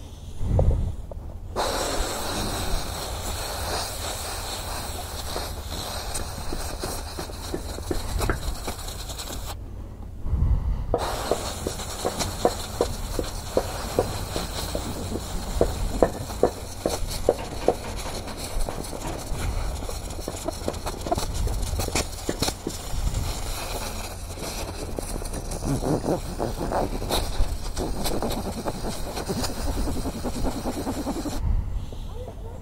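Compressed-air blow gun hissing as it blows dust out through a scooter's pleated air filter. It comes in two long blasts with a short break about ten seconds in, and the second blast is broken by many short pulses.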